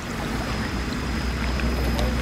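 Air stones in a fish tank, freshly charged with air, bubbling vigorously: a steady rush of bubbles breaking at the water surface, over a low steady rumble.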